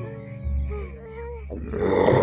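Cartoon soundtrack music with small gliding notes over a low drone, then a loud growl from the giant cartoon frog starting near the end.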